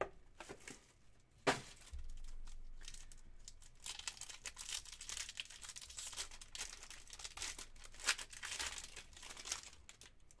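A sharp knock about a second and a half in, then plastic and foil wrapping crinkling and tearing as a foil-wrapped trading card pack is handled and torn open.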